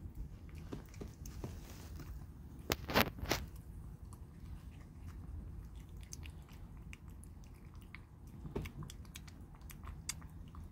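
A kitten eating from a plastic container, with a steady run of small wet chewing clicks and smacks. A few louder knocks come about three seconds in.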